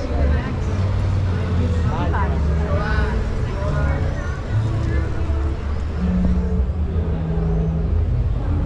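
Busy city street ambience: passers-by talking over the low rumble of car engines and traffic.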